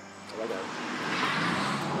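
A car driving past, its tyre and engine noise building steadily through the second half.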